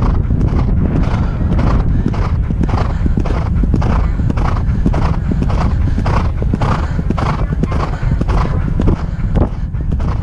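A Thoroughbred galloping on turf: a steady rhythm of hoofbeats, about two strides a second, with heavy wind rumble on the helmet-mounted microphone.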